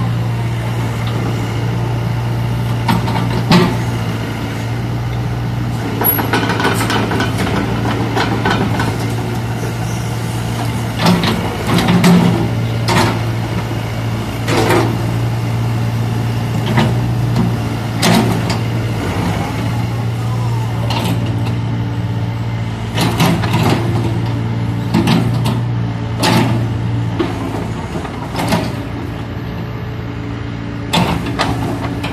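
Kobelco SK60-3 mini excavator's diesel engine running at a steady hum while the boom, arm and swing are worked, with sharp knocks from the machine scattered throughout. The engine note drops near the end.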